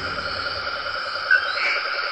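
Steady chorus of insects and frogs, layered trills with a fast pulsing beat, with a brief chirp about a second in.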